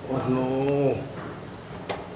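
A cricket trilling steadily in a high, evenly pulsing tone. A person's voice draws out a short sound in the first second, and a sharp click comes just before the end.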